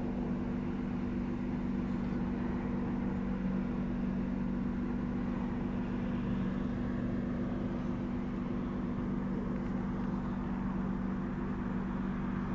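A steady low mechanical hum with a few steady low tones in it, unchanging throughout.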